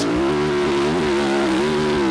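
Yamaha YZ450F four-stroke single-cylinder motocross engine pulling under throttle at fairly steady revs, with a brief dip and pickup about halfway, over a steady rushing hiss.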